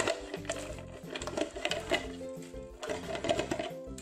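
A clear plastic bottle crackling and rasping in three bursts as it is turned against a homemade wooden bottle cutter and a thin plastic strip is pulled off it, over background music.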